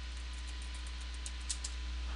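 Computer keyboard typing: faint, light key clicks, with a few louder ones about a second and a half in, over a steady low hum.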